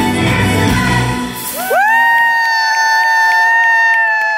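Pantomime finale song sung live by the cast over a backing track with bass, which drops out about a second and a half in; the singers then slide up into a final long held note in harmony, with the audience cheering.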